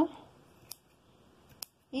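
Scissors snipping through the yarn of a pompom to trim it round: two short, sharp snips about a second apart.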